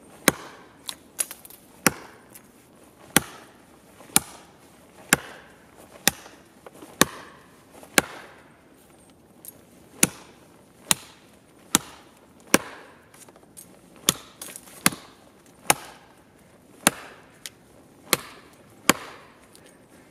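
A brush sword's steel blade chopping into a thin standing tree trunk, about one sharp strike a second, each a crisp whack into the wood.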